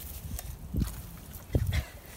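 Thick wet mud squelching as legs in rubber boots are worked free of it: two low squelches, one near the middle and one near the end, with lighter wet clicks between.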